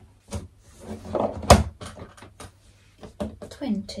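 Handling noises of a cardboard advent calendar box: a run of knocks and taps as it is moved and its little cardboard door is worked open, the loudest knock about one and a half seconds in.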